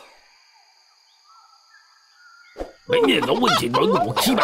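Faint, steady, high-pitched night ambience, then a short knock about two and a half seconds in. Right after it, cartoon characters break into loud, wordless jabbering voices.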